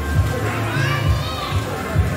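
Arcade background music with a steady pulsing bass beat, mixed with children's voices.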